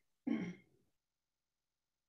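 A person clearing their throat once, briefly.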